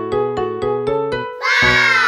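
A run of short keyboard notes, about four a second, then near the end a loud cartoon cat's meow that falls in pitch.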